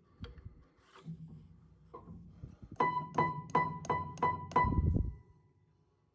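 Upright piano with its action exposed: a few light clicks of handling in the action, then one treble note struck six times in quick succession, about three a second, ringing between strikes, as the refitted hammer is tested.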